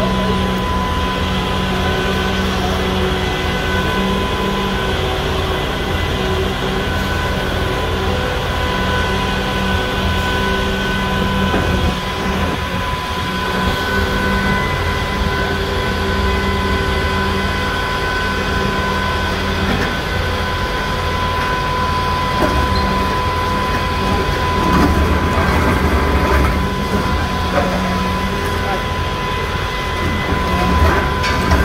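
Volvo high-reach demolition excavator running steadily, its diesel engine rumbling under a constant whine, and growing a little louder near the end as it works the structure.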